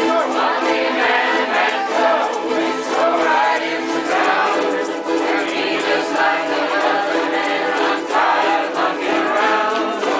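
A large group of ukulele players strumming and singing a song together.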